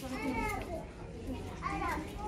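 A child's high-pitched voice talking in two short stretches, one at the start and one near the end, over a low steady shop background hum.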